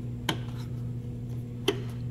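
Two short sharp clicks, about a second and a half apart, as a rubber tail-light grommet is handled and pushed into the round opening of a Jeep JK tail-light mounting plate, over a steady low hum.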